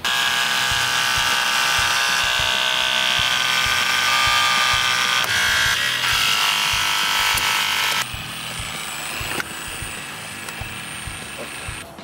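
Battery-powered Genesis C236-SL3 hydraulic rescue cutter running, its electric pump motor giving a steady whine as the blades close on a car seat-back frame. About eight seconds in the sound drops suddenly to a quieter steady running with a thin high tone.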